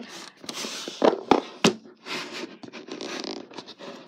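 Close handling noise of objects being fumbled with right at the microphone: rubbing and scraping, broken by several sharp clicks and knocks.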